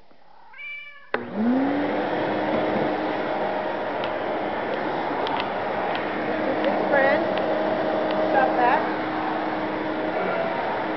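A cat meows, then a vacuum cleaner switches on about a second in, its motor rising in pitch as it spins up and then running steadily. The cat meows twice more over the running vacuum, near the end.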